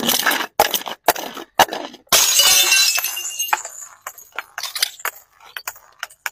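Glass mason jar full of small beads tumbling down concrete steps, knocking on the steps about every half second, then shattering about two seconds in with a long ringing crash. Scattered beads and shards patter and click across the steps afterwards.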